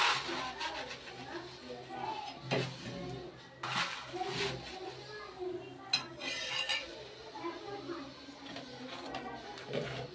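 Steel spatula scraping and knocking on an iron tawa as a roti is pressed and turned, with a few sharp clinks, the clearest about 2.5 s and 6 s in. Indistinct voices run underneath.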